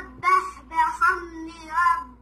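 A young boy's voice in a melodic chant, several drawn-out phrases with short breaks between them.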